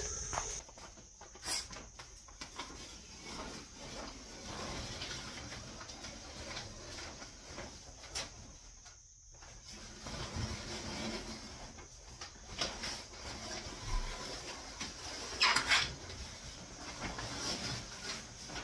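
Masking tape and masking paper being peeled off a freshly epoxy-coated boat hull and gathered up: intermittent faint rustling and tearing, with a clearer tear about fifteen seconds in. A steady high cricket chirr carries on in the background.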